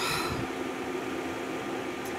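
Steady room noise: an even hiss with a faint low hum, and a short hiss near the start.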